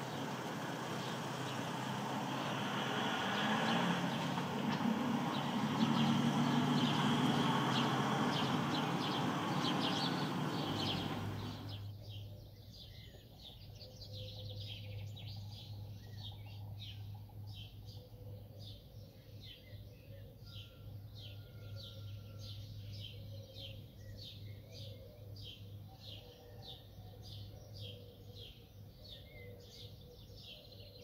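Small birds chirping in quick, repeated short notes outdoors. For the first dozen seconds a loud, steady rushing noise covers them, then it cuts off suddenly and the chirping goes on over a faint low hum.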